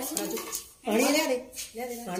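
A steel drinking tumbler clinks as a woman drinks water from it. There are two short bursts of a woman's voice, about a second in and near the end.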